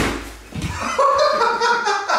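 A single sharp smack of a fist punching a hand-held strike pad, a 'cotton fist' strike that knocks the holder back, followed by two men laughing.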